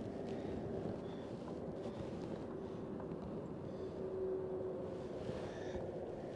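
Steady low rumble of wind and water around a small aluminium fishing boat, with a faint steady hum running through it.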